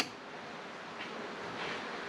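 A single sharp click as the tractor's dash-mounted rocker switch is flipped on to power the newly wired auxiliary LED work lights, followed by a faint steady hiss.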